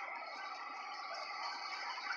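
Steady road noise heard inside the cabin of a moving car.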